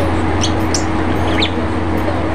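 Small birds chirping in short, scattered high calls over a steady low hum.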